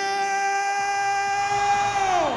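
Ring announcer's voice over the arena PA, holding one long drawn-out shout of the winner's name on a steady pitch, starting to fall away at the very end.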